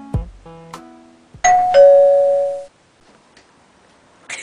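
Doorbell chime ringing two notes, a higher ding then a lower dong, about a second and a half in, cut off abruptly about a second later. Before it, the tail of a plucked-string and keyboard music track fades out.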